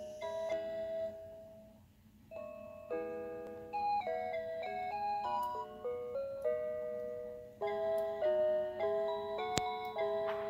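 A musical model Ferris wheel's built-in electronic chimes playing a melody of clear stepped notes. The tune breaks off for a moment about two seconds in, then goes on. There is a single sharp click near the end.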